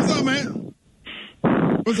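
Talk-radio banter: a voice in the studio, then short breathy, rasping noises over a telephone line from the caller.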